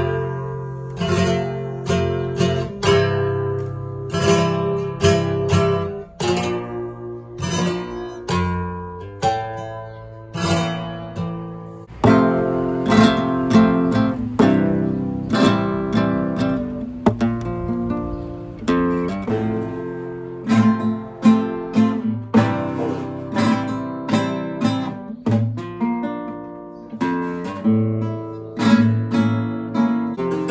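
Solo flamenco guitar playing a run of plucked notes and chords in a steady rhythm, getting louder about twelve seconds in.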